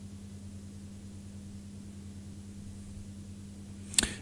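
Room tone: a low, steady electrical hum with faint hiss, and a single brief click at the very end.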